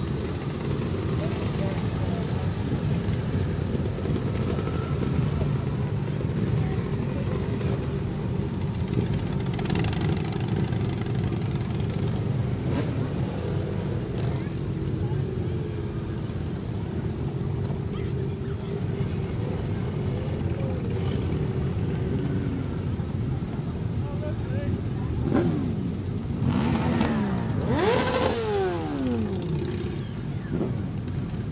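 A procession of many motorcycles, with a few cars among them, running at low speed in a steady mass of engine noise. Several engines rev up and down near the end.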